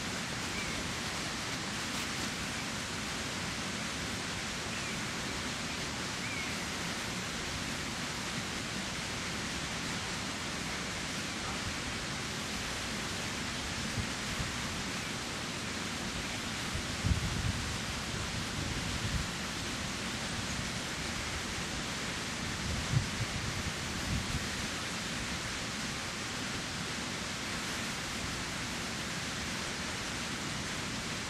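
Steady rushing of river water. A few faint short chirps come in the first seven seconds, and there are a couple of low thumps about halfway through.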